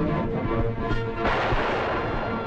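A single gunshot a little over a second in, its noise fading away over most of a second, over background film music.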